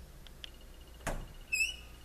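Interior door being pushed open: a sharp click about a second in, then a short, high-pitched hinge squeak that wavers in pitch.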